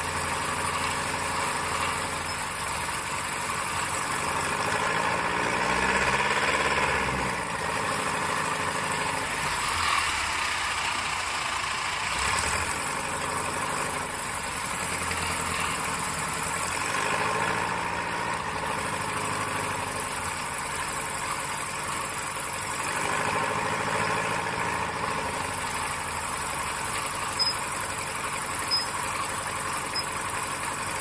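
Piper Super Cub's piston engine and propeller running in flight, heard from outside the airframe with heavy wind rush. The engine note swells and sags in pitch a few times.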